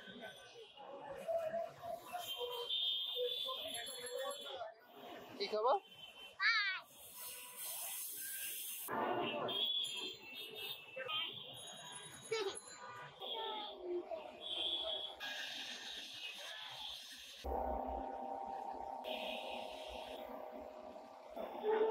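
Busy street noise: indistinct voices and chatter, with several steady high tones like vehicle horns and a warbling rising tone about six seconds in.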